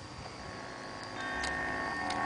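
Eerie ambient intro of a spoken-word recording: a steady hiss with a thin high whine, joined about a second in by sustained drone tones that slowly build.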